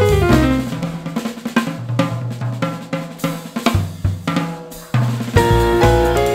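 Jazz drum kit played with sticks in a short drum break of snare, bass drum and cymbal hits. A keyboard's falling run fades out in the first half-second, and the band comes back in loudly with keyboard chords just after five seconds.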